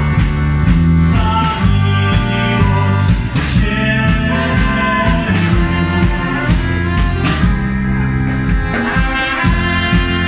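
A street band playing live: a brass horn and an accordion over strummed acoustic guitar, with a stepping bass line and a steady drum beat.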